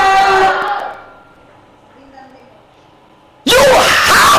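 A loud, held shout of voices, fading out about a second in. After a lull, a loud shouting voice starts abruptly near the end.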